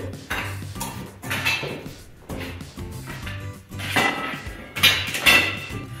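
Several metallic clanks and clinks, the loudest a cluster near the end, as a bent EMT conduit is lifted out of a hand conduit bender and handled, over background music.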